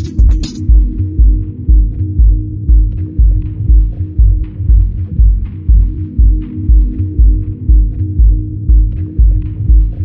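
Deep house track with a four-on-the-floor kick drum at about two beats a second under a sustained dub bassline. The hi-hats and top end cut out about half a second in, leaving the kick, bass and faint ticking percussion, a filtered-down stretch of the groove.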